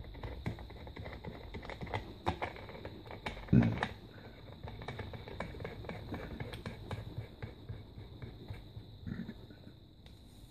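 Small metal clicks and taps as a rebuildable vape atomizer is handled and unscrewed, with one louder thump about three and a half seconds in. A faint steady high-pitched tone sounds throughout.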